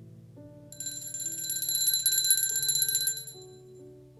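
Altar bells shaken in a rapid, bright ring for about two and a half seconds, starting just under a second in, marking the elevation of the consecrated host at Mass. Soft instrumental music plays underneath.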